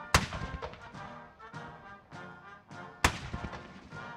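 Two ceremonial cannon salute shots about three seconds apart, each a sharp bang with an echoing tail, over military band music.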